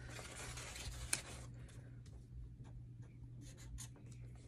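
Faint scratching of a pen writing by hand on a card, mostly in the first second and a half, with a light click about a second in, over a low steady hum.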